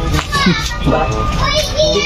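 Children's voices chattering and playing, with music in the background.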